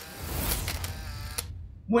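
An editing sound effect: a hissing burst of noise with a low rumble underneath. It lasts about a second and a half and cuts off suddenly.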